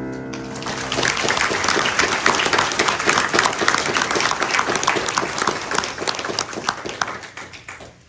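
The last chord of a Yamaha grand piano rings out, and audience applause starts over it almost at once. The clapping goes on for about seven seconds, thinning out and fading near the end.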